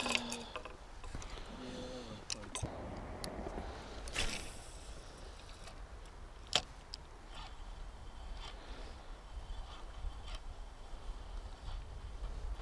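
Quiet handling of a spinning rod and reel: scattered small clicks, with one sharper click about six and a half seconds in, over a low steady rumble.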